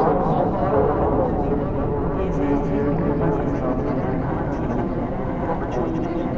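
Sampled voices fed through a Buchla 288v modular synthesizer module, coming out as a continuous, dense layer of overlapping, pitch-warped voice fragments. The pitches waver and glide in the first second, then settle into steadier held tones over a constant low rumble.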